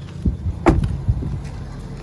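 Rear door of a Ford F-350 crew cab shutting with one solid thump about two thirds of a second in, with lighter knocks and rustling around it.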